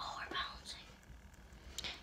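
A girl whispering softly for under a second at the start, then faint, near-quiet sound.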